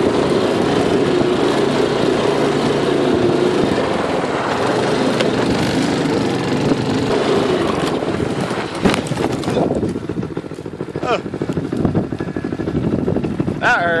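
A go-kart's small single-cylinder engine running under load as the kart drives and slides through snow, mixed with heavy wind noise on the microphone. A man shouts twice near the end.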